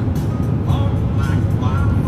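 Car driving along a road: a steady low road rumble, with music playing over it.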